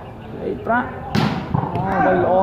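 A volleyball struck hard by a player's hand: one sharp smack a little after a second in, ringing briefly in the metal-roofed hall, over men's voices calling during the rally.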